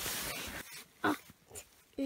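Rustling as a hardcover atlas is pulled out and handled, followed about a second in by a short grunt-like voiced sound.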